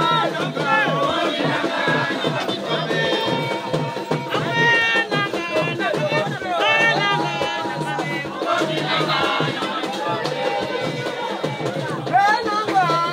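Group of voices singing an Elombo ritual song over rhythmic percussion, several high voices sliding up and down in pitch.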